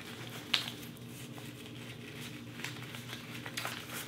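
Resistance mini bands being pushed and stuffed into a small cloth pouch: soft rustling and handling noise, with one sharp click about half a second in, over a faint steady hum.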